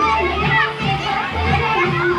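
Children shouting and playing in a splash pool over loud music with a heavy bass beat.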